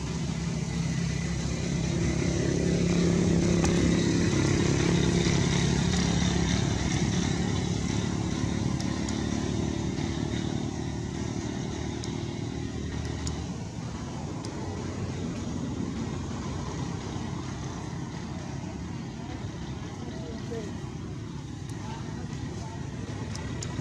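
A motor vehicle's engine running, growing louder over the first few seconds and fading after about thirteen seconds.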